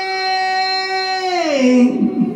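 A male singer's voice holding one long, high note into the microphone, which slides down to a lower pitch about one and a half seconds in.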